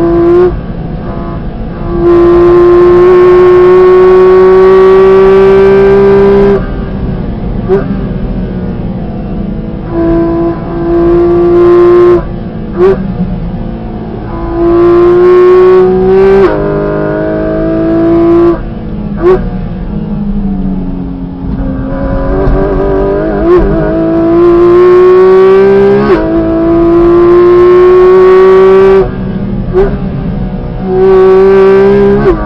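Porsche 718 Cayman GT4 RS's naturally aspirated 4.0-litre flat-six heard from inside the cabin, revving hard at full throttle in about five long pulls that rise slowly in pitch. The pulls are broken by quick gear changes of its PDK gearbox and by lifts off the throttle, where it falls quieter.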